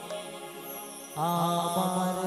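Live Bengali Baul folk song: quiet accompaniment, then about a second in the amplified singing comes back in loudly on a long held note.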